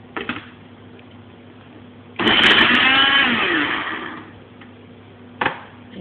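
A food processor's motor runs in one burst of about two seconds, grinding dried bread slices into breadcrumbs. It starts suddenly about two seconds in, then winds down with a falling pitch. There is a short knock near the end.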